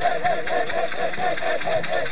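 Many caxixi basket rattles shaken together in a fast, steady rhythm, with a group of voices calling out short repeated syllables in time, about four a second.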